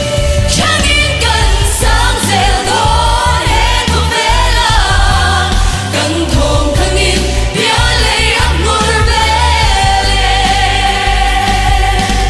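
Live Mizo pop song: male and female singers take turns on handheld microphones over amplified band accompaniment with a steady, heavy bass.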